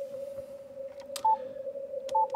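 Yaesu FTdx5000MP transceiver's receiver audio in CW mode: a steady low tone at the CW pitch, band noise through a narrow filter while a very weak station fades in and out. A little over a second in comes a single short, higher beep with a click, the radio's panel beep as a button is pressed.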